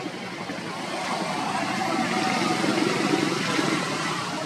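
A motor vehicle's engine running, growing louder about a second in and easing off near the end, as if passing by.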